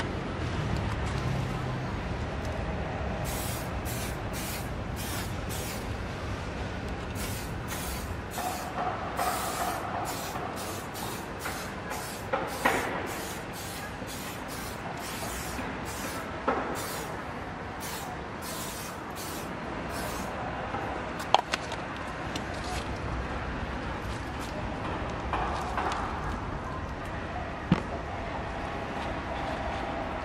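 Aerosol tire shine sprayed onto a car tyre in a long run of short hissing bursts, which stop about two-thirds of the way through, with a few sharp knocks in between. A steady low rumble runs underneath.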